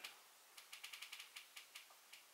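Near silence with a faint run of light clicks: about a dozen quick ticks starting about half a second in.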